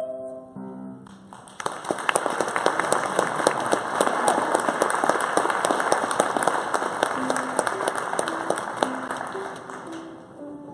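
A musical number's last sustained notes die away, then an audience applauds, starting about one and a half seconds in and thinning out near the end. Soft instrumental music plays faintly underneath.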